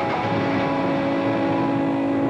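Engine running steadily at a constant pitch, a loud even drone.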